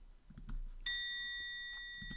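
A single bright chime, like a struck bell, sounding about a second in and ringing out with a slow fade. It is an edited-in transition cue.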